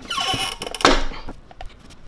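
A heat press being closed: the top platen's arm squeals, falling in pitch, as it swings down, then shuts with a loud clunk a little under a second in.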